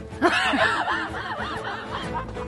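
A woman laughing, a quick run of laughs that rise and fall in pitch.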